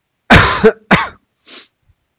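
A man coughing: two loud coughs close together, then a fainter third one.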